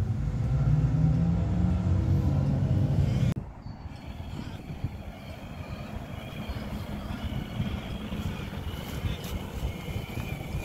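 Traxxas TRX-4 RC crawler's electric motor and gearbox whining faintly as it tows a trailer across grass. A louder low rumble in the first few seconds cuts off suddenly.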